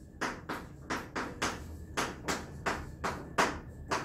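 Chalk writing on a chalkboard: a quick, even run of short taps and scrapes, about three strokes a second.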